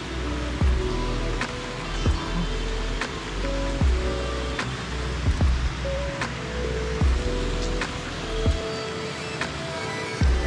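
Background music with a steady beat and held melodic notes.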